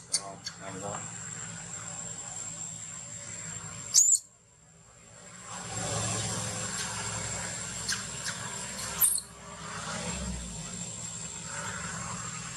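Baby macaque giving short, high-pitched squeaks, a few times several seconds apart, over a steady high tone and low background hum.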